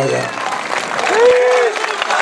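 A large outdoor crowd applauding and cheering, with a long shouted call from the crowd about a second in.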